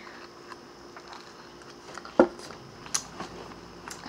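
Quiet room with faint handling noises and two short, sharp clicks, about two and three seconds in.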